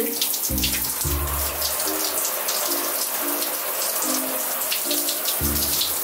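Shower water running steadily into a bathtub and splashing around a person's feet, over background music with a slow line of held low notes and deep bass hits.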